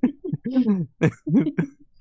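A person's voice: several short voiced sounds with no clear words.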